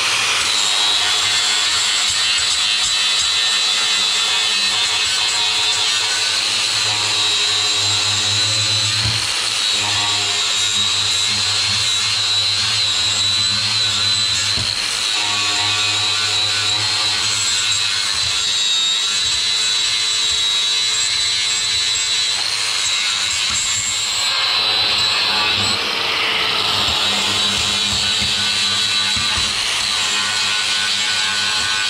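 Angle grinder fitted with a sanding disc, running steadily under load against the sheet steel of a car's engine bay, with a constant high motor whine over the grinding noise.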